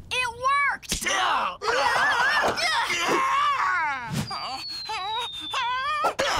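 Animated characters screaming and groaning without words, in cries that slide and waver in pitch. About two-thirds of the way through, a thin high whistling tone comes in and glides slowly downward.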